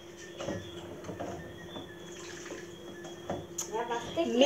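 Faint clicks and knocks of small objects being handled, over a steady low hum. A voice begins just before the end.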